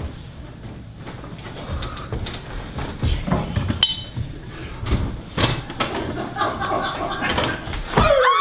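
Scattered knocks, footfalls and a brief clink of a stage prop as a performer moves about a set and handles things, growing busier in the second half.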